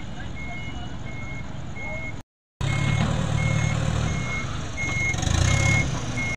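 A truck driving off a ferry's loading ramp, its engine rumbling and pulling harder near the end, while an electronic warning beeper sounds a short high beep about every 0.7 seconds. The sound cuts out completely for a moment about two seconds in.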